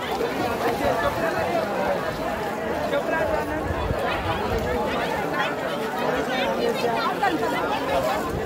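Many people talking at once: a steady babble of crowd voices.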